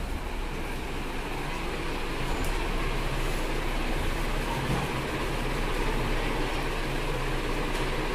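A steady, even rushing noise with a low hum beneath it, growing slightly louder.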